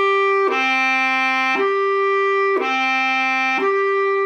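Bass clarinet playing a slow, slurred perfect fifth in the clarion register, alternating between written A and D (high, low, high, low, high), each note held about a second. The notes speak cleanly with no squeak, since at this slow tempo each note gets its own correct voicing.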